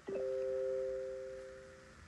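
Phone's incoming-message alert chime: two held notes sounding together, with a sharp start, fading out over almost two seconds.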